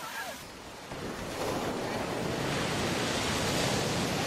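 Ocean surf breaking and washing up the shore, a steady rush of water that grows louder about a second and a half in.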